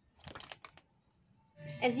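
A brief crackling rustle, then quiet; background music comes in near the end, with a woman starting to speak.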